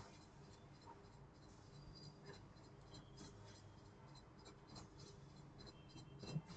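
Near silence: room tone over a faint low hum, with faint, scattered scratching of pens on paper.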